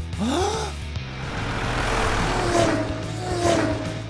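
A short gasp, then a swelling rush of noise like a cartoon vehicle sound effect, over steady background music.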